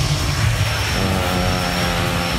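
A steady mechanical engine drone, with a low pitched hum that sets in about a second in and holds level, over a thin high whine.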